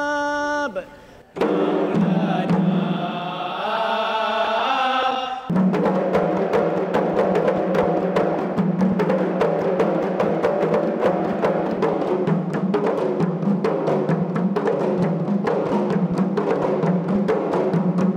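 A voice chants a melodic line, with a short break about a second in. About five seconds in, a troupe of kompang frame drums, wooden rims with skin heads, strikes up together, beaten by hand in a fast, steady, many-stroke rhythm that carries on through.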